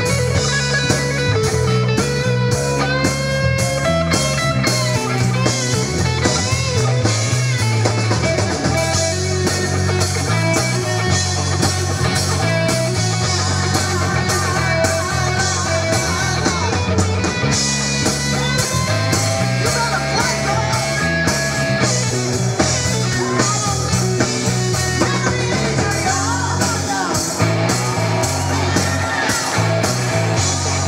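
Live blues-rock band playing: an electric guitar lead with bent notes over bass, drum kit and keyboard.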